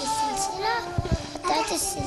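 A young girl's voice in short phrases over background music with held notes. Two dull thumps about halfway through come from the handheld microphone being moved.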